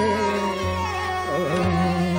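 Hindustani classical vocal: a male voice holding a long, ornamented note that bends and settles again, over a tanpura drone with tabla accompaniment.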